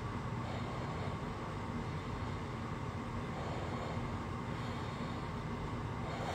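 Steady low background rumble of room noise picked up by a phone microphone, even and unchanging, with no other distinct sound.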